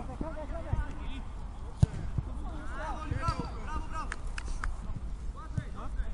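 Football players calling out across the pitch, with sharp thuds of the ball being kicked; the loudest kick comes a little under two seconds in.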